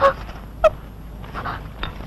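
A woman's brief, high-pitched wavering vocal sounds: one right at the start and a shorter one just over half a second in, with quiet between.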